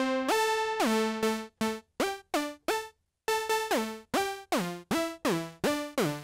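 Reaktor Monark, a Minimoog-style analog synth emulation, playing a quick melody of short plucky notes in a high register. Glide is on, so each note slides in pitch into the next. There is a brief pause about halfway through.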